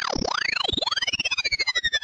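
Electronic synthesizer sweeps: several tones glide up and down in arcs, then settle into slowly falling tones, over a fast pulsing flutter that grows more pronounced toward the end.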